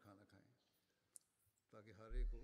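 Near silence with room tone. Faint speech trails off at the start and resumes near the end, and one tiny click comes about a second in.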